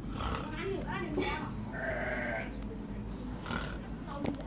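A man's voice talking, then a drawn-out, wavering vocal cry lasting about a second, near the middle.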